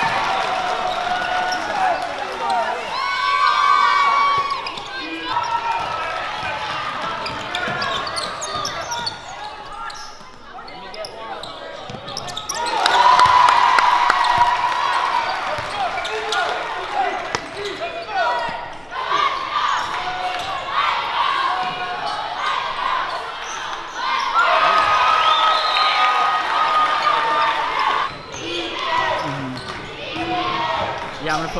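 Live basketball game sound in a gym: a basketball bouncing on the hardwood court amid shouting voices from players and spectators.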